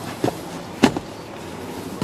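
Two short knocks, the second louder, a little over half a second apart, as a logbook wallet is handled on a leather car seat.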